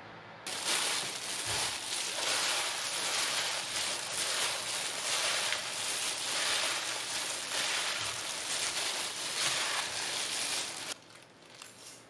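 A hand in a plastic food-prep glove tossing glass noodles, vegetables and sauce in a bowl: continuous crinkly rustling of the glove and food. It starts about half a second in and stops about a second before the end.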